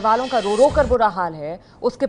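A woman narrating in Hindi over a news sound effect: a brief hissing whoosh at the start and a low thud a little after half a second in, the sting of an animated 'Breaking News' graphic.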